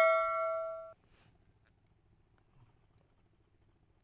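A bell-like ding sound effect from a subscribe-button animation, ringing and fading until it cuts off suddenly about a second in, followed by near silence.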